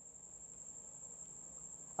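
A faint, steady high-pitched tone holds over a low background hiss.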